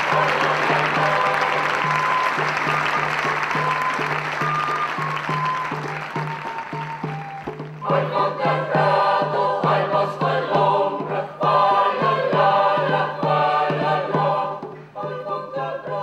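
Audience applause over background music, fading out; about eight seconds in, a choir starts singing.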